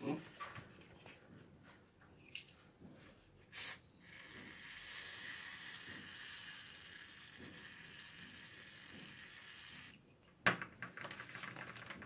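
Aerosol can of WD-40-type penetrating oil sprayed through its straw onto an opened ball bearing to flush out the old grease: a steady hiss that starts about four seconds in and lasts about six seconds. A short knock comes just before it and another just after it stops.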